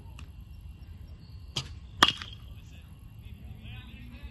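Baseball bat hitting a pitched ball: one sharp crack about two seconds in, with a lighter click a split second before it.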